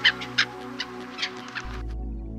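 Gulls calling in short, sharp notes, about five calls over the two seconds, over steady background music. The calls stop shortly before the end.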